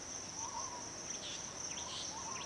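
Steady high-pitched insect drone, cricket-like, with a few faint short warbling calls at a lower pitch.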